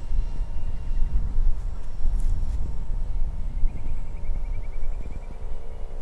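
Wind buffeting the microphone in a low rumble, with the faint steady whine of a small RC plane's brushless motor and propeller flying far off.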